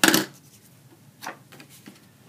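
A plastic snail adhesive tape runner knocks down onto the craft table with one short, loud clack, followed by two fainter taps of card stock being handled.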